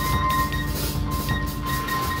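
Live experimental band music: several held electronic tones over a dense, noisy, rhythmic texture.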